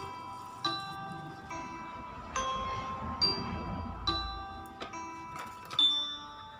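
Soft background music: a slow melody of chiming, bell-like notes, each struck and left to ring out, about one a second.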